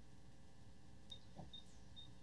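Near silence: faint room tone on a video-call audio feed, with a faint click about a second in.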